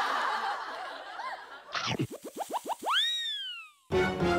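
Comic cartoon sound effect: a quick run of rising boings that speed up, ending in one long tone that rises and then slides down. Before it, a market crowd murmurs in the background.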